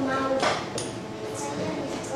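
Children's voices murmuring in a classroom, with a short sharp knock and a brief high clink about half a second in.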